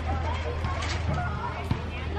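Faint, distant voices of children and adults at play over a steady low hum, with a couple of light knocks about halfway through and near the end.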